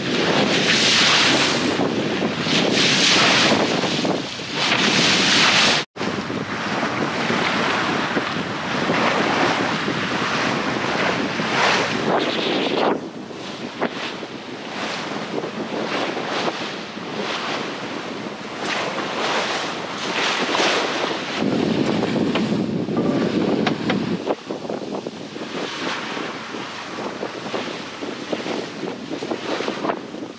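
Wind buffeting the microphone over water rushing along the hull of a sailboat under way, a steady noise that surges and eases. It cuts out for an instant about six seconds in, and it drops in level a little after halfway.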